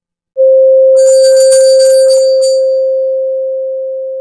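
An electronic outro tone: a loud, single steady pitched tone that starts suddenly about a third of a second in and holds, slowly fading, with a bright chime-like shimmer sparkling over it for the first couple of seconds.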